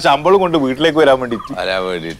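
A man talking in Malayalam.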